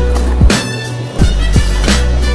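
Hip hop beat with deep bass kicks that drop in pitch and sharp snare hits, in a gap between rap verses.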